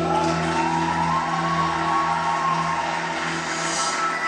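Dance backing track in a transition: a whooshing noise sweep, with a tone gliding upward at first, that swells and brightens toward the end, over held low synth pad notes.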